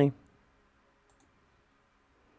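A spoken word ends at the very start, then near silence broken by two faint, short computer-mouse clicks about a second apart.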